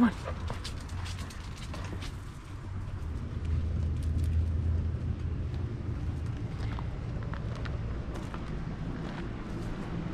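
Outdoor background: a low steady rumble that swells around four seconds in, with scattered light clicks and footsteps as a person walks out across a patio into a yard.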